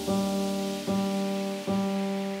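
Intro of a melodic dubstep track: sustained chords that change about every eight-tenths of a second, over a soft hiss.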